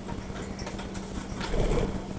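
Sheet of origami paper being handled and creased by hand: light paper rustles and small taps, growing into a louder rustle with a soft bump near the end.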